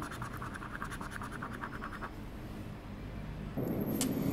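Scratch-off lottery card being scraped, quick short strokes rubbing off the silver latex coating for about two seconds. Near the end there is a louder rustle of card being handled.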